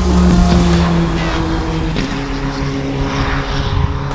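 Open-wheel formula race car's engine as the car passes at speed, loudest as it goes by, then the note steps down in pitch about two seconds in and runs on more quietly as the car pulls away.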